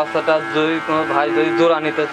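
A heifer mooing: one long, steady moo.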